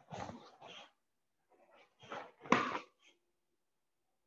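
A karate practitioner working through kata moves: two clusters of short, sharp huffs and rustles, one at the start and one about two seconds in, the second opening with a sharper hit.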